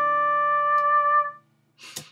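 Software flute instrument in a Logic arrangement holding one long note over fainter low sustained notes, then cutting off abruptly as playback is stopped.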